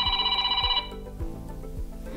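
A Samsung Galaxy S23 ringtone preview playing from the phone's speaker: a buzzing electronic tone that pulses rapidly, lasting about the first second and then cutting off.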